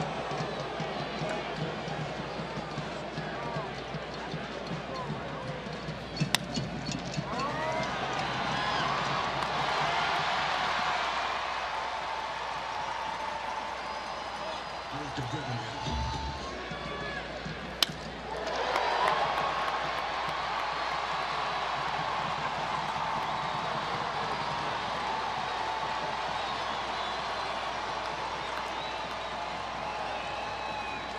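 Ballpark crowd noise broken twice by a single sharp crack of a baseball bat meeting the ball, about six seconds in and again just before eighteen seconds in. After each crack the crowd rises into cheering, the second time more suddenly.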